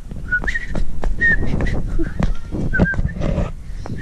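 Low rumble of wind and handling on a handheld action camera's microphone while walking, with a few light knocks and about six short, high chirps scattered through.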